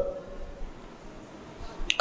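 A pause in a man's speech: his last word trails off at the start, leaving a quiet room with a faint low hum. Near the end there is one short, sharp click just before he speaks again.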